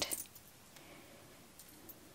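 Near silence: quiet room tone with faint handling of a darning needle and yarn in a knitted sock, including a couple of soft ticks.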